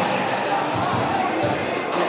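Basketball-court ambience: a basketball bouncing on the hardwood floor with people talking in the hall.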